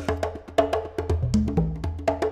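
Background music: a quick, even percussion beat of short clicks over a stepping bass line.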